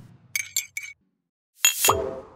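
Sound-effect clinks of a teaspoon on a china teacup: a few quick, light, ringing clinks about half a second in, then a short swoosh near the end.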